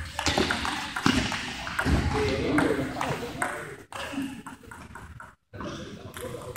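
Table tennis ball being struck by paddles and bouncing on the table in a rally, a string of short sharp clicks, with people talking.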